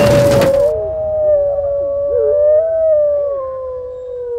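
Howling sound effect: one long, steady howl with several other howls rising and falling beneath it, fading toward the end. A short burst of noise comes right at the start.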